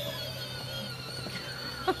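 A woman starts laughing near the end, in short sharp bursts, over a faint steady background hum.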